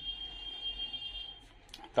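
A steady, high-pitched electronic beep that holds one pitch for about a second and a half and then stops.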